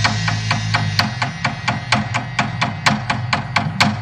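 Rapid wooden percussion clicks in a steady rhythm, about five or six strikes a second, the time-keeping beat of traditional Khmer dance music, with a held low tone fading out in the first second.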